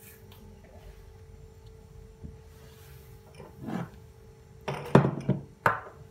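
A few short knocks and clatters of kitchenware being handled and set down on a countertop, the loudest about five seconds in, over a faint steady hum.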